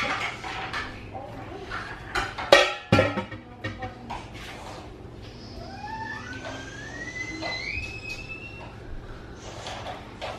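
Metal and glass clattering as a hot jar is lifted out of a water-bath canner. The loudest clatter comes about two and a half seconds in. Later a faint whine rises in pitch over about three seconds.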